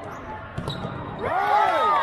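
A volleyball thudding off players' arms and the hardwood court during a rally, followed by several voices calling out loudly together, their pitch rising and falling over about a second.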